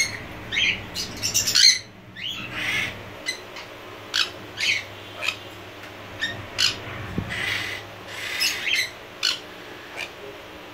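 Jenday conures squawking: a string of short, sharp calls, about two a second, loudest around one and a half seconds in.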